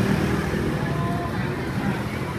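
Street ambience: a steady low rumble of motor traffic, with voices mixed in.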